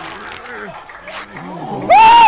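A cartoon character's low, wavering growling grunts, followed by a man's loud yell that bursts in just before the end.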